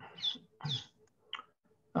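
A man's voice in short, broken fragments during a pause in his speech, three or four brief hissy bits separated by short silences.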